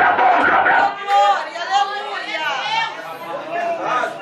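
Only speech: a man preaching loudly into a handheld microphone.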